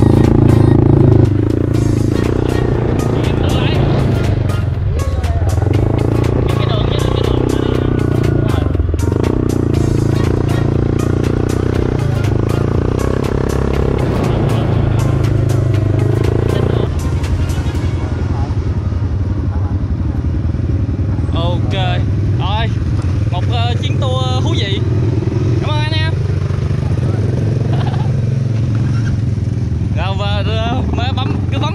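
An ATV quad bike's engine running steadily as it rides over sand, under background music. In the second half, voices come in over the engine.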